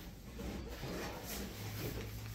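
Faint rustling and scraping of a large cardboard box being handled and moved aside.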